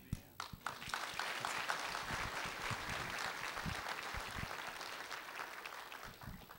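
Congregation applauding: a few separate claps in the first second, quickly thickening into steady clapping that eases off near the end.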